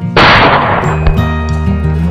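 A single hunting-rifle shot just after the start, loud and sudden, dying away over about a second as its echo fades. Background music plays under it.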